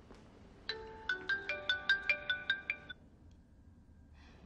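Mobile phone ringtone: a quick melody of about ten short pitched notes that starts under a second in and stops near the three-second mark, an incoming call.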